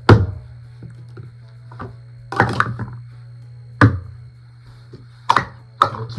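Plastic sport-stacking cups being picked up and set down on a stacking mat, giving about six sharp separate clacks at irregular intervals, a small cluster of them near the middle.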